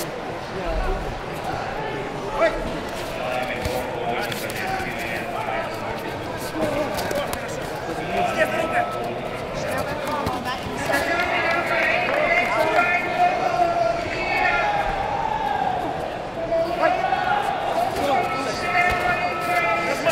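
Voices shouting and calling out in a sports hall during a kickboxing bout, louder and more continuous in the second half. Scattered thuds of gloved punches and kicks and feet on the mat come through underneath.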